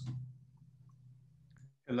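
A pause between two speakers: near silence with a faint steady low hum and a few faint clicks about a second and a half in, then a man's voice starts to say "Hello" at the very end.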